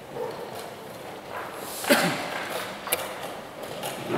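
Wooden chess pieces knocking on the board and a chess clock being pressed during a blitz game: two sharp clicks, the louder about halfway through and the next about a second later, over the steady background noise of the hall.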